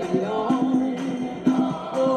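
Group of voices singing a gospel-style song, with a steady percussive beat about twice a second, heard as the soundtrack of a film played in a room.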